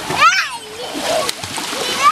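Small children running and splashing through shallow water, with a child's high squeal about a quarter second in.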